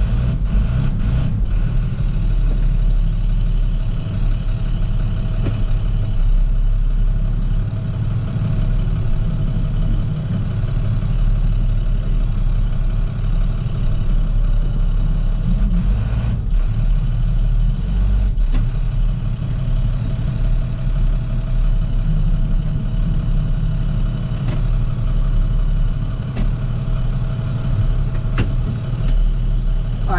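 Roll-off truck's engine running steadily at low revs, heard from inside the cab as the truck is manoeuvred slowly into position. A few light clicks sound near the start and again about halfway through.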